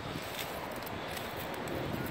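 Low, steady outdoor background noise with light wind on the microphone; no distinct sound event stands out.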